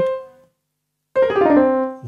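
Piano-sound notes played from a MIDI keyboard: a note rings and fades out in the first half-second, then after a short silence more notes are struck just past a second in and ring on, fading.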